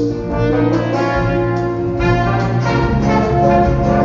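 Live band music in a theatre, heard from the audience: an instrumental passage between sung lines, with guitars, drums and sustained brass chords.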